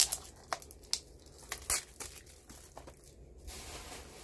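Plastic wrapping being torn and crinkled off a DVD case, with a few sharp clicks and a longer rustle near the end.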